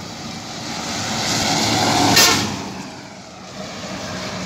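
A bus passing close by on a highway. Its engine and tyre noise rises to a sharp peak about two seconds in, then fades away.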